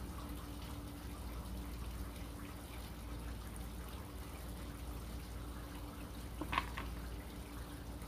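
Quiet room tone: a steady low electrical hum under faint hiss, with one brief, faint sound about six and a half seconds in.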